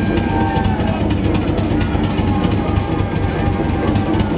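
Rock drum kit played fast in a solo: a dense, unbroken flurry of strokes with a continuous low rumble from rapid bass drum and tom rolls under cymbals, amplified in a concert hall.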